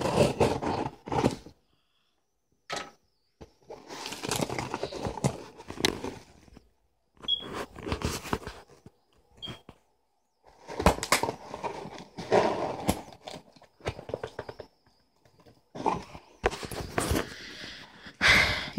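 Scissors cutting through the tape on a cardboard shipping box, with the box and plastic packaging being handled: scraping, rustling and crinkling in irregular bursts with silent gaps between, and a few sharp clicks.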